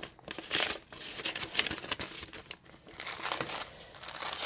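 Paper rustling and crinkling as a sheet of paper and an envelope are handled and turned over, in irregular bursts with small clicks.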